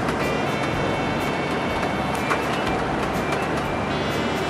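Steady engine and road noise of a moving bus, heard from inside the cabin, with music playing over it.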